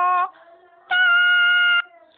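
A single voice singing "do" on steady held notes, part of a vocal warm-up exercise. One note ends just after the start; after a short pause a second "do" is held for about a second an octave higher, showing the same note sung in a different octave.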